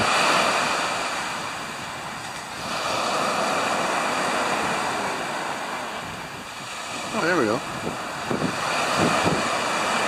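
Ocean surf rushing, swelling and easing in waves, with wind on the microphone.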